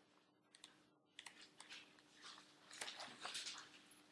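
Faint handling noise: scattered soft clicks and light rustles from about a second in, as material is got ready on a desk.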